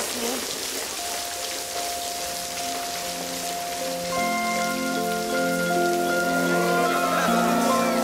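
Steady heavy rain pouring down. Soft music with long held notes comes in about a second in and fills out with more notes from about four seconds on, growing slightly louder toward the end.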